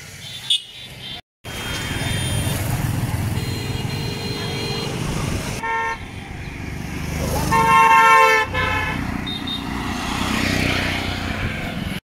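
Vehicle horns honking over passing road traffic: a held honk about three seconds in, a short one near the middle, and the loudest, longest honk about two-thirds of the way through. The sound cuts out briefly about a second in.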